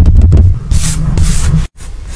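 Close-miked paper sketchbook being handled: a heavy low rubbing of hands against the book, then two short papery swishes, and the sound cuts off suddenly near the end.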